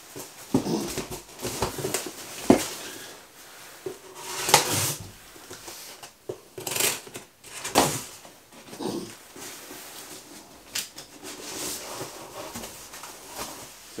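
Cardboard guitar shipping box being cut open with a lock-blade knife: irregular scraping and slicing through packing tape, with several louder tearing rips and the knock and rustle of the cardboard flaps.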